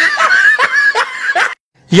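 A man laughing in a run of short bursts, about four of them, that cut off abruptly about one and a half seconds in.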